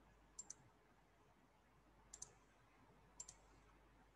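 Near silence broken by three faint double clicks, each pair quick and sharp, spread a second or so apart.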